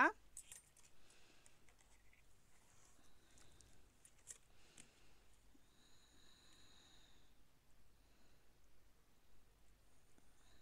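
Quiet room with a few faint clicks and handling sounds as a toothpick works the mouth opening into a soft cold-porcelain clay face. A faint high steady tone lasts about a second and a half a little past the middle.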